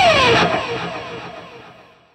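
Heavy metal track's final note: a held electric guitar lead note dives down in pitch, then rings out and fades away to silence.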